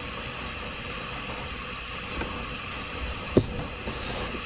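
Steady background hiss and hum of room or recording noise, with a few faint clicks and one sharper click a little past three seconds in.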